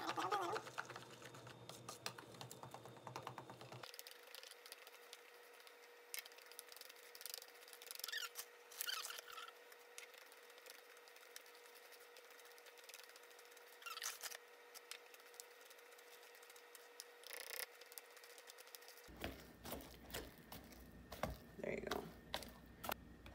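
Wire whisk stirring thick banana bread batter in a mixing bowl: faint, irregular scraping and clicking as flour is worked in.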